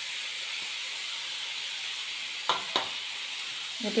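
Amaranth greens and grated coconut sizzling steadily in a frying pan, with two sharp clicks close together about two and a half seconds in.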